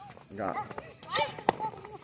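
Voices calling out during a kids' football game, with a sharp knock about one and a half seconds in.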